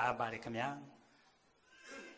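A man's voice speaking, the phrase ending within the first second, then a pause with a faint short sound near the end.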